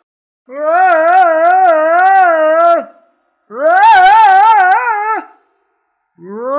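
A cartoon voice giving two long, wavering ghostly 'oooo' wails, a spooky Halloween moan with a slow up-and-down vibrato.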